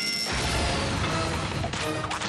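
Cartoon sound effects of a strength-tester arcade machine overloading: a high held tone cuts off just after the start, then a long, loud, noisy crash as the machine bursts and smokes, under background music.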